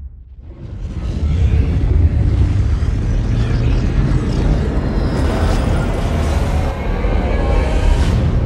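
Trailer score with a deep, heavy rumble that swells up about a second in and then holds loud.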